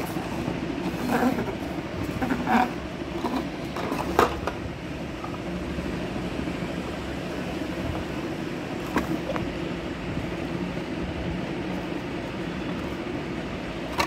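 Plastic blister packs of die-cast toy cars being handled, giving a few brief crackles and taps about a second, two and a half, four and nine seconds in, over a steady low hum.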